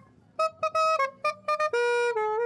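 Saxophone playing a run of short, separate notes, then holding a long note near the end.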